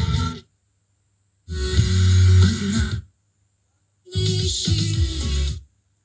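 FM radio on automatic station search, played through the boombox's speakers: it plays three short snippets of broadcast music, each about a second and a half long, and the sound cuts to silence between them as the tuner jumps to the next station.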